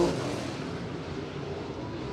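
A field of dirt late model race cars running laps on a dirt oval, their V8 engines blending into a steady drone.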